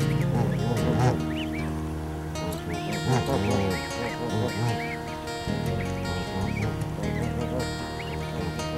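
Newly hatched Canada goose goslings peeping: short, high, arching calls repeated every second or so over background music.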